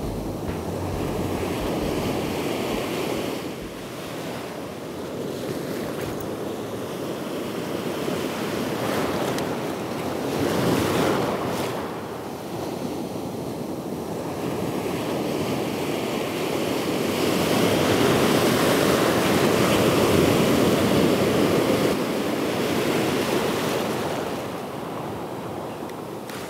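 Surf breaking and washing up a sandy beach, a steady rush that swells and fades slowly, loudest about two-thirds of the way in, with wind on the microphone.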